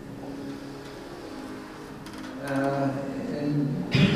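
Quiet room tone, then indistinct male speech from about two and a half seconds in.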